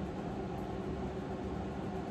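Steady background hum with hiss: constant room noise with no distinct events.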